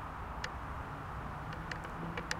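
Quiet outdoor background: a steady low rumble with a few faint ticks, and a faint low hum that starts near the end.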